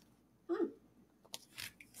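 A woman's short, quiet 'hmm' about half a second in, followed by a few faint sharp clicks near the end.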